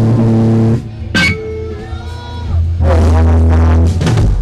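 Amplified, distorted electric guitar and bass of a live hardcore punk band holding a loud ringing chord that cuts off just under a second in. A sharp click follows, then a quieter stretch, and another loud held chord comes in about three seconds in.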